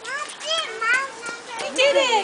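Young children's high-pitched voices chattering and calling out, several at once near the end.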